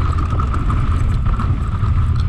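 Mountain bike descending a dirt trail: wind rumbling on the bike-mounted camera's microphone and tyres running over dirt and loose stones, with a steady high-pitched buzz under it.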